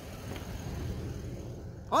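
Dodge Ram pickup's engine idling, a low steady rumble, with a short loud exclamation from a man right at the end.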